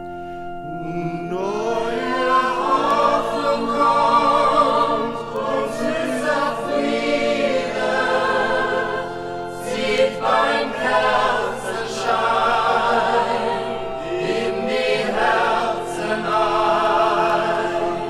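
Choir singing over sustained pipe organ chords. The voices come in about a second in with vibrato and carry on throughout, while the organ holds long steady chords that change in steps.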